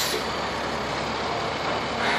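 Truck engine running steadily, a constant even noise.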